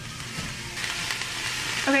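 Zucchini noodles sizzling in a hot frying pan as they are tipped in. The hiss swells over the first second and then holds steady.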